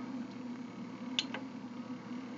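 Steady hum of a battery inverter and its cooling fan running under a heavy household load. Two short clicks come a little after a second in as the display button on the inverter's front panel is pressed.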